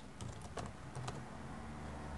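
Faint typing on a computer keyboard: a short run of separate keystrokes as a word is typed in.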